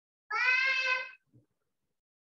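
A cat meowing once, a single call about a second long with a fairly level pitch, coming through a video call.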